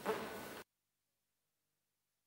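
Faint room sound with a brief soft noise at the start, then, about half a second in, the sound cuts off suddenly to dead silence, as when a chamber microphone is switched off between speakers.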